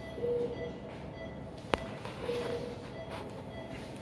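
Steady operating-room equipment noise with a soft short tone recurring about once a second and a single sharp click about halfway through.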